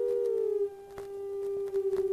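A sustained electronic drone tone. It bends slightly up and back down in pitch near the start, then drops in loudness about two-thirds of a second in and holds steady.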